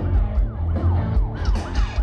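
A rock band playing live over a loud PA, with bass and drums under a lead line of quick falling pitch swoops, about four a second, that sound siren-like.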